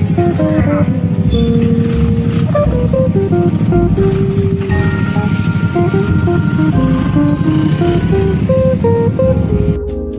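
Background music: a melody of short, stepping notes over a steady, dense low beat, played at an even, loud level.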